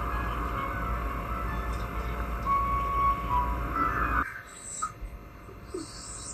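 Film soundtrack: music over a dense, steady low rumble of background noise, which cuts off suddenly about four seconds in and leaves a quieter stretch with a few faint sounds.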